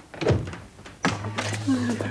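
A door thumps shut about a third of a second in. From about a second in, a steady low hum runs under a short voice-like sound.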